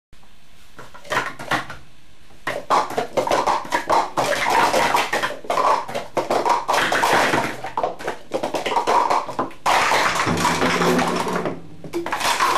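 Plastic sport-stacking cups clattering on a stack mat during a speed-stacking cycle stack: a few taps, a short pause, then a dense, rapid run of light clicks and taps for about eight seconds. Near the end the clatter stops and a drawn-out voice is heard.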